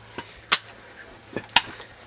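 A few sharp clicks or knocks, the two loudest about half a second and a second and a half in, with fainter ones between.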